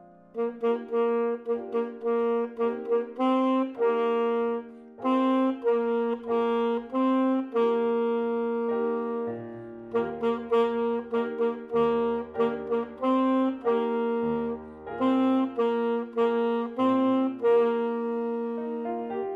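Saxophone with piano accompaniment: the saxophone comes in just after the start and plays a melody of held notes in phrases, with short breaks, over the piano's lower notes.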